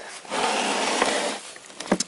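Scraping, rubbing noise lasting about a second as a bare V6 engine block is turned by hand, then a short click near the end.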